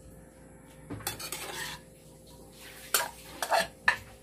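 A metal spatula scraping and clinking against a metal pan as food is stirred and scooped. There is a short scrape about a second in, then a few sharp clinks in quick succession near the end.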